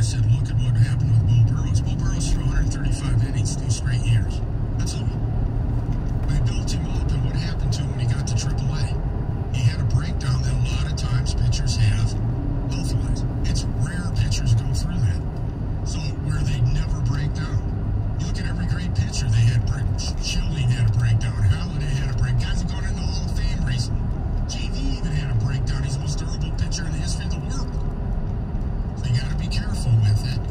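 Car cabin noise while driving: a steady low road and engine rumble, with a muffled talking voice over it, broken by short pauses every few seconds.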